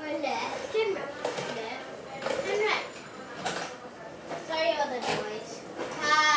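Children's voices, unworded calls and chatter, with a few short knocks in between.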